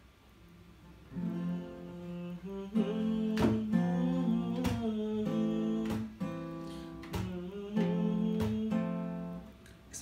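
Acoustic guitar played fingerstyle: chords plucked on the three treble strings and left ringing, with a sharp percussive chuck on the strings about every second and a bit. The playing starts about a second in.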